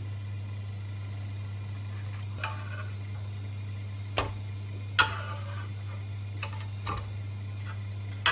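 A handful of scattered short clicks and taps from a metal spatula against a nonstick frying pan as a pancake is lifted and turned, the sharpest about five seconds in. A steady low hum runs underneath.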